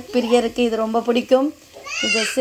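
A high-pitched voice uttering a run of short syllables at a fairly level pitch, with no clear words.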